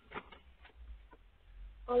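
A pause in a person's reading aloud: faint low hum with small mouth or breath noises, then the voice starts speaking again near the end.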